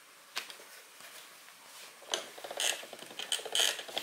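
Hand-cranked noodle-rolling machine clicking rapidly and evenly as a floured sheet of dough is cranked through its rollers, starting about two seconds in, after a single knock near the start.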